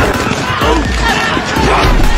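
Music mixed with the sounds of a football play: players' shouts and grunts, and heavy thuds of bodies and pads colliding, about three of them.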